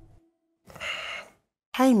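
A single breathy sigh, under a second long.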